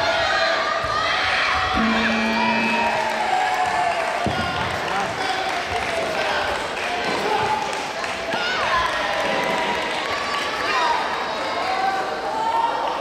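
Voices shouting and calling in a large echoing sports hall during taekwondo sparring, with thuds of feet and kicks on the mat. A steady electronic tone sounds for about a second and a half, about two seconds in.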